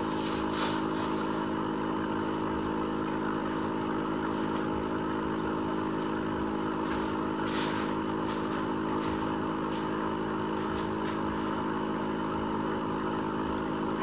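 A steady mechanical hum made of several level tones, with a faint, quickly pulsing high tone above it.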